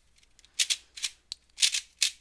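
Dayan Guhong 3x3 speedcube being turned quickly by hand: about five short, clicky plastic turns of its layers, starting about half a second in.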